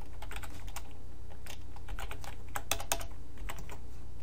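Typing on a computer keyboard: irregular key clicks over a steady low hum.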